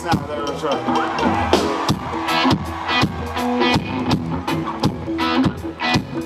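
Live rock band playing a steady groove through a loud PA: a drum kit beat at about two hits a second under electric guitar and bass.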